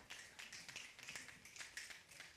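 Scattered, faint finger snaps from several audience members, coming irregularly, in a room otherwise near silent.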